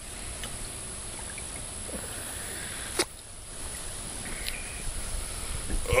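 Steady outdoor background noise with one sharp click about halfway through.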